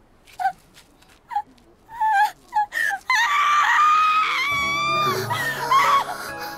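A young woman's anime voice-acted scream. It starts with short gasps and whimpering cries, then breaks about three seconds in into one long, high, panicked scream. Dramatic music with low sustained notes swells underneath from about halfway through.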